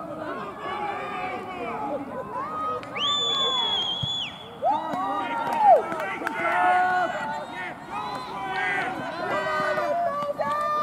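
Players and spectators shouting throughout, with a referee's whistle blown once, one steady high blast of about a second and a half, about three seconds in. A loud shout follows just after the whistle.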